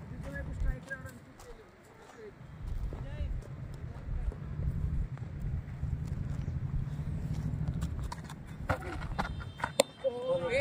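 Low wind rumble on the microphone, then a few quick footfalls and a sharp knock just before the end: a cricket bat striking the ball.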